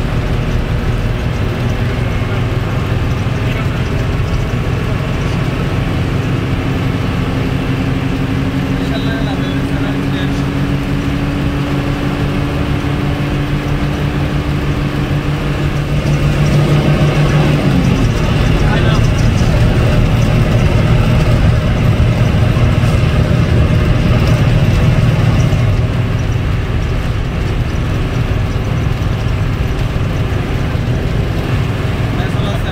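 Bus diesel engine and road noise heard from inside the bus, running steadily under load. The engine note climbs slowly, then drops sharply a little past the halfway point, and the sound is louder for several seconds around that point.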